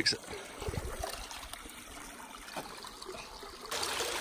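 Water trickling through the breach in a beaver dam, faint at first with a few low knocks in the first second, then a louder, steady noise of running water setting in near the end.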